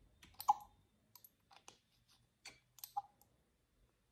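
Small clicks and light knocks from a serum bottle being opened and its dropper drawn out. The two sharpest ticks come about half a second in and just before three seconds, each with a short ring.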